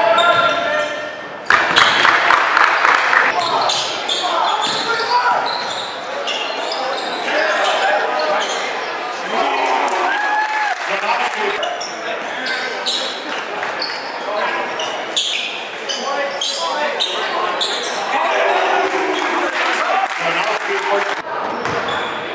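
Basketball being dribbled and bouncing on a hardwood gym floor during play, with players' and spectators' voices echoing in a large gym.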